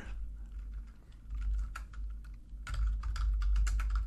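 Typing on a computer keyboard: a few scattered keystrokes at first, then a quicker run of keys in the last second or so, over a steady low hum.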